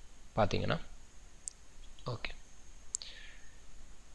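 Two sharp computer mouse clicks about a second and a half apart, with brief murmured voice sounds near the start and about two seconds in.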